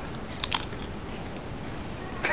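A tortilla chip bitten close to the microphone: two sharp crunches about half a second in, over a steady low room hiss.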